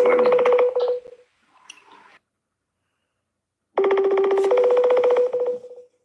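Phone ringing on an outgoing call: a buzzy two-note ring, a lower note stepping up to a higher one, heard once ending about a second in and again about four seconds in, with a silent gap between.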